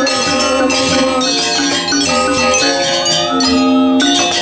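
Balinese gamelan angklung ensemble playing in kebyar style: bronze-keyed metallophones ring in fast, dense figures over drums. Near the end the fast strokes drop away and a low note rings on, and then the full ensemble strikes again.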